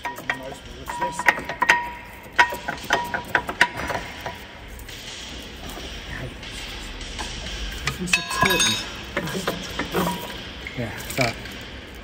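Metal clinks and knocks as a worn brake pad is worked out of a Mercedes Actros truck's rear disc brake caliper by hand. A quick run of ringing clinks comes in the first four seconds, with fewer, scattered clinks after.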